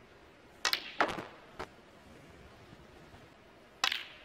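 Sharp clicks of a snooker cue striking the cue ball and the resin balls knocking together: a close pair just over half a second in, the loudest click about a second in, a smaller one shortly after, and another loud click near the end.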